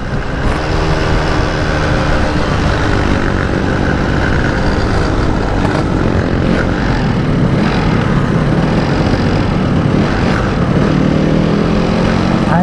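Yamaha RX-King's two-stroke single-cylinder engine running hard as the motorcycle is ridden fast, its pitch rising and falling as the throttle is worked, with wind noise on the microphone.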